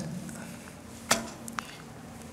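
A single short, sharp click about a second in, then a fainter one about half a second later, over a low steady room hum.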